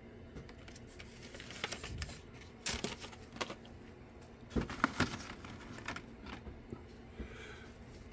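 Plastic blister-card packs being handled and set down against a backdrop, with a few light clicks and crinkles of the plastic packaging.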